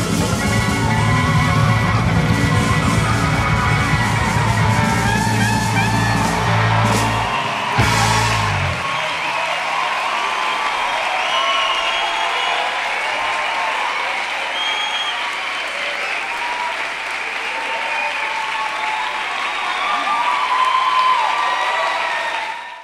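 A rock band with a brass section (trombone, trumpet, saxophone, sousaphone) plays the song's last bars, the music cutting off after closing hits about eight and a half seconds in. The audience then applauds and cheers until the end.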